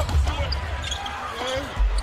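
Basketball dribbled on a hardwood court, with low thuds early on and again near the end, over steady arena crowd noise.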